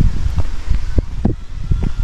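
Wind buffeting the camera microphone as a low, uneven rumble, with several short low thumps.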